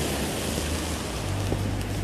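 Steady rushing noise of a car passing on a wet street, with wind on the phone's microphone.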